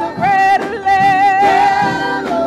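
Gospel choir singing, the voices holding long, slightly wavering notes.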